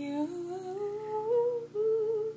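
A person humming a slow melody without accompaniment: one long note gliding slowly upward, then a short break and a second held note near the end.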